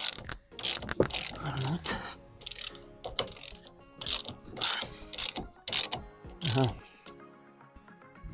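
Hand ratchet wrench clicking in short strokes, about one or two a second, as the rear bumper's fasteners are undone.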